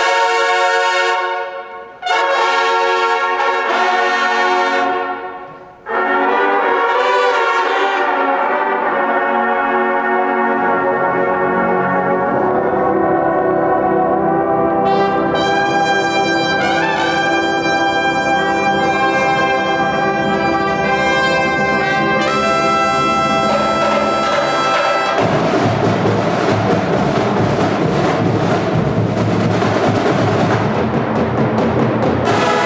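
Drum and bugle corps horn line of G bugles playing loud held chords. The first two cut off sharply at about 2 and 6 seconds, then a long chord builds and swells. Near the end the percussion section comes in with a loud wash of cymbals and drums under the brass.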